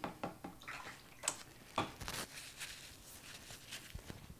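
Painting supplies being handled at a work table: a few light clicks and knocks, with short swishing water sounds.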